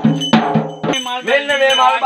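Double-headed barrel drum beaten in a quick, even ritual rhythm, about four strokes a second, with bright metallic jingling over it. About halfway through, a man's chanting voice comes in over the drumming.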